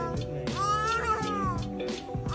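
A toddler's crying wail, one long cry that rises and then falls about half a second in, over background music with a steady beat.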